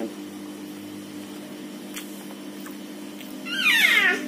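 A cat meows once near the end, a short high call falling in pitch, over a steady low hum.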